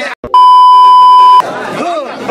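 A censor bleep: one steady, loud beep about a second long, starting just after a very brief cut in the sound, bleeping out a word in the excited talk, which picks up again straight after.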